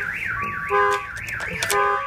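AutoPage 350 aftermarket car alarm siren sounding after being triggered, a fast warble rising and falling about four times a second. A steady chord of beeps comes and goes under it, and there are a couple of sharp clicks near the end.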